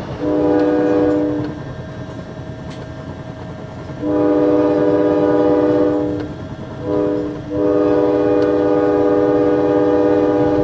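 Passenger train's horn sounding a chord of several tones in four blasts (long, long, short, long), the pattern of a grade-crossing signal, heard from aboard over the steady rumble of the train running.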